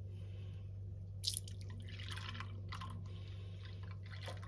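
Milk pouring from a carton into a glass measuring jug, in a few short splashing pours, over a steady low hum.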